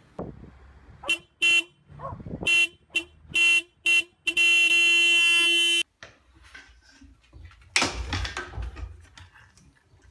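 A horn sounding in six short toots, then one long blast of about a second and a half that cuts off suddenly. A loud thump with a noisy rustle follows near the end.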